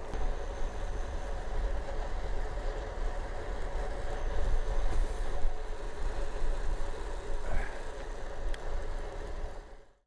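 Wind rumbling on the camera's microphone and tyre noise from the Trek Checkpoint ALR 5 rolling at about 19 mph on wet tarmac, fading out near the end.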